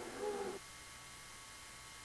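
A faint voice, cut off suddenly about half a second in, followed by a low steady hiss.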